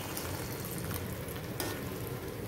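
Thin coconut milk poured into a hot kadai of simmering jaggery syrup and red flattened rice (aval), sizzling steadily as it is stirred in.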